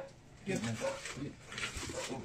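Indistinct voices in the room, then a few short crackling clicks near the end as a knife cuts into a whole roast lamb.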